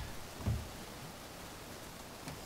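Faint steady background hiss, with one short low sound about half a second in.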